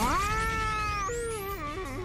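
Cannonbolt's cartoon voice letting out a long transformation shout. It rises in pitch, holds for about a second, then breaks and wavers downward. A thin whistling sweep climbs high above it.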